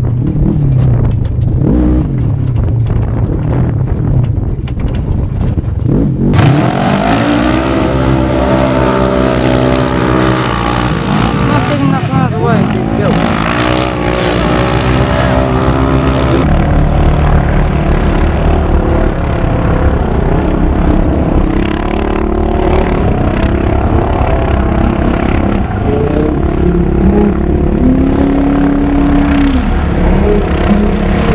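Side-by-side UTV race engines running and revving, the pitch rising and falling. The sound changes abruptly twice where the footage cuts.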